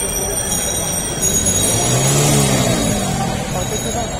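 Busy street: crowd voices mixed with traffic, and a drawn-out pitched sound that rises and falls near the middle.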